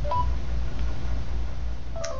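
A short two-note electronic beep from an Android phone's voice-assistant app, a lower note stepping up to a higher one just after the start, over a steady low hum.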